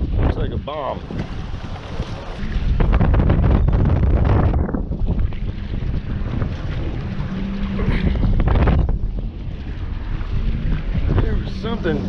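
Strong wind buffeting the microphone in gusts, a loud rumbling noise that rises and falls over the choppy water.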